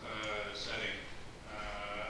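Only speech: a man talking into a table microphone.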